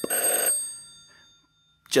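Telephone bell ringing, stopping about half a second in, its ring fading away over the next half second.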